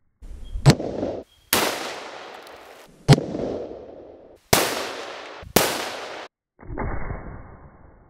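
About six rifle shots from a Howa 1500 bolt-action in .243 Winchester, cut together one after another. Each is a sharp crack followed by a fading echo, some tails cut off short, and the last shot is duller.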